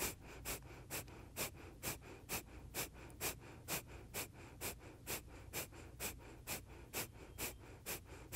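Kapalabhati breathing: a woman's short, sharp exhalations forced out through the nose by pumping the abdominals, about two a second in a steady rhythm.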